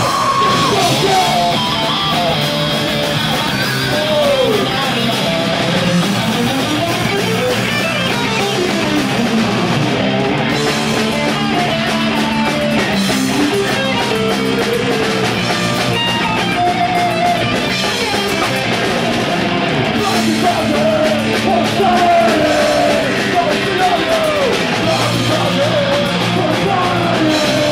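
Hardcore punk band playing live: distorted electric guitars, bass and drums at full volume, with shouted lead vocals over them.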